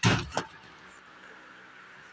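Wooden wardrobe door being swung open: a short clunk right at the start and a smaller click about half a second later, then quiet room tone.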